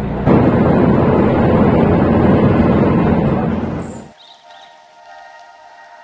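Loud rumble and wind noise of a moving bus, cutting off abruptly about four seconds in. Quiet background music with long held chords follows.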